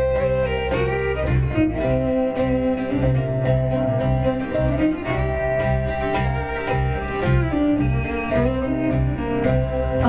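Fiddle playing an instrumental break in a traditional folk ballad, over a rhythmic plucked-string accompaniment with a strong low bass.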